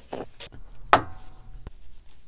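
Fabric being handled on a table, with faint soft clicks and one sharp click about a second in.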